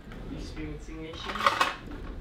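Kitchen utensils clinking and clattering on the counter, loudest about a second and a half in, under a faint voice.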